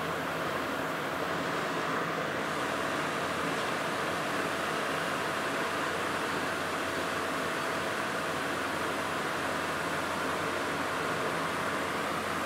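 Steady background room noise: an even hiss with a faint constant hum, unchanging throughout.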